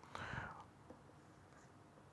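A man's short breath, about half a second long, near the start, then near silence with one faint click.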